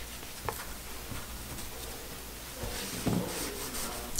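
Faint rubbing and rustling of denim as hands smooth and press glued denim patches flat, with a light tap about half a second in.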